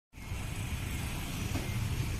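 Steady low rumble of road traffic, starting just after the opening instant.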